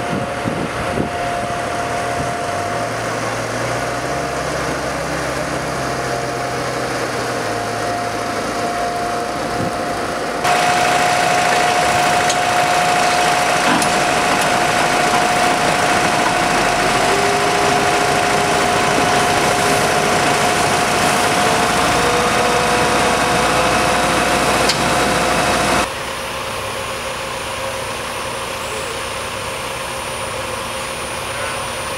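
Heavy vehicle engines running steadily at idle, with a constant whine over them. The sound changes abruptly twice: it gets louder about ten seconds in and quieter again near the end.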